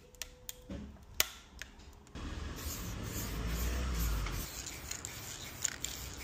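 Sharp clicks and snaps of plastic 3D-print supports being broken off a print, the loudest about a second in. From about two seconds in, a steady hiss with a low rumble: an aerosol spray-paint can being sprayed to lay a colour gradient on a print.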